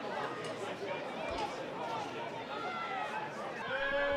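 Ambient sound of a football pitch: faint, scattered shouts and chatter from players and a small crowd of spectators.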